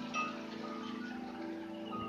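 Wind chimes ringing: several clear notes at different pitches sound one after another and overlap as they fade.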